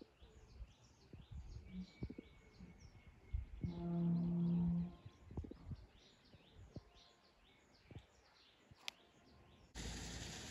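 A distant low call held steady for about a second, about four seconds in, over faint, repeated high chirps of birds.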